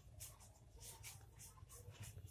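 Faint, soft rustling of paper banknotes as they are counted through by hand, a few light rustles scattered through the quiet.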